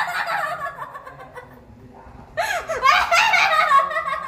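A woman laughing loudly in high-pitched, wordless shrieks. One bout fades over the first second, and a second bout breaks out about two and a half seconds in.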